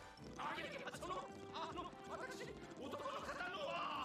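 Japanese anime dialogue played quietly: short, wavering voiced lines.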